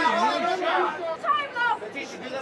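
Overlapping voices talking and calling out, several people at once.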